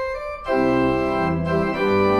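Organ playing sustained chords. A thinner high passage gives way to a fuller, louder chord with bass about half a second in.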